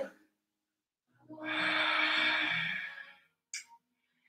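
A person's single long audible exhale, like a sigh, lasting about a second and a half and starting just over a second in; a brief faint click follows near the end.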